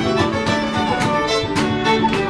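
Irish traditional session band playing a reel together at a brisk pace, with fiddles carrying the melody alongside flute, tenor banjo and guitar.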